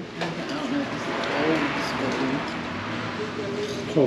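Indistinct voices of people talking over a steady background hum, with a louder voice breaking in right at the end.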